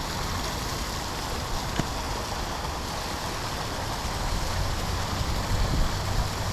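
Fountain water splashing steadily as a row of spouts pours into a stone basin. A low rumble grows louder in the second half.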